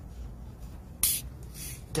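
Gas hissing out of a hard-shaken bottle of Kooksoondang live (saeng) makgeolli as the cap is cracked open with the bottle tilted about 45 degrees: a short sharp hiss about a second in, then a softer one. This is the pressure of the shaken, fizzy rice wine being let off gradually so it does not burst out.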